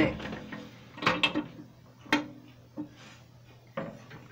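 A model airliner being handled and turned around on a glass display-cabinet shelf: a few sharp clicks and knocks, about a second apart.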